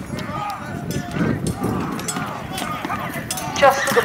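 Battle re-enactment melee: many men shouting at once over scattered sharp knocks of weapons striking shields and each other, with horse hoofbeats coming in near the end.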